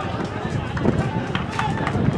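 Voices of people shouting and calling out at an outdoor football match, over a low rumble.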